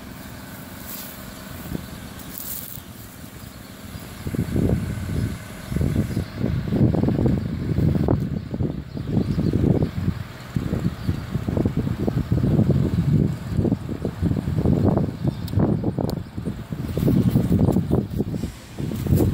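Wind buffeting the microphone in irregular gusts of rumbling from about four seconds in, over a quiet steady background.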